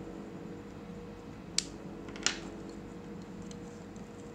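Two sharp clicks, about a second and a half in and again just past two seconds, over a steady low hum.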